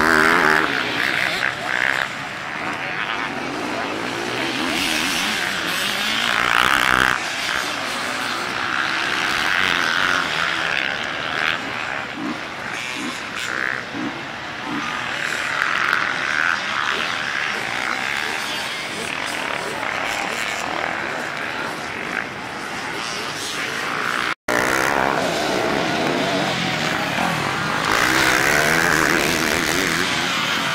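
Several enduro dirt-bike engines revving as riders climb a hillside track, the buzz swelling and fading as each bike passes in turn. A brief gap about three-quarters of the way through, then the engines sound closer.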